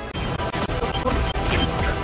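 Cartoon crash-and-smash sound effects, a rapid run of sharp impacts, over background music.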